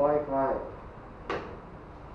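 A few words of speech, then a single sharp knock a little over a second in.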